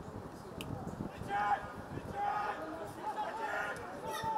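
Footballers' shouted calls carrying across the pitch during play, over open-air stadium ambience; the shouting starts about a second in and comes in several short calls.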